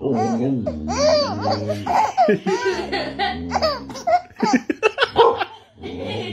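A baby laughing in a string of short, high, rising-and-falling laughs.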